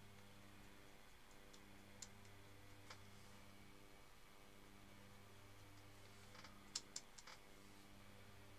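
Near silence: a low steady hum of room tone, with a few faint light clicks, one about two seconds in, one about three seconds in, and a short cluster near the end.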